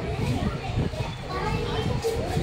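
Small children's voices chattering and calling out, over a steady low rumble.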